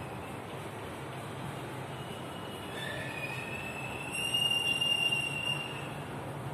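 Chalk squeaking on a blackboard as it is written with: a high squeal that starts about two seconds in, grows louder and steadier, then stops shortly before the end.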